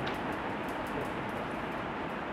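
Steady classroom background noise in a pause between sentences: an even hum and hiss with no distinct events.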